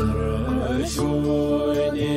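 A Buddhist prayer sung by one voice in a slow, wavering melody over a steady sustained musical backing. The voice comes in at the very start.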